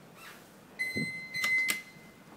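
Elevator hall call button being pressed. A steady high electronic beep starts just under a second in and holds for about a second, with a dull thump and then two sharp clicks from the button during it.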